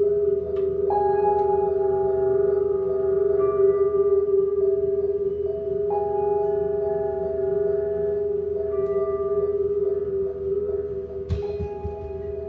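Free-improvised music from keyboard, electric guitar, drums and electronics: a steady held drone with other long tones entering and dropping out, like a singing bowl. A sharp hit with a low thud comes near the end.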